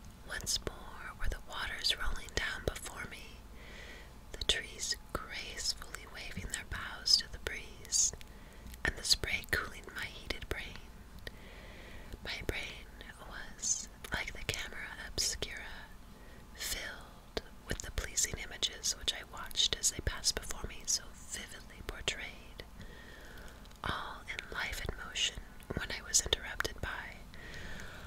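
A woman whispering, reading a story aloud in a steady run of soft, breathy words with crisp hissing consonants, until her full speaking voice returns at the very end.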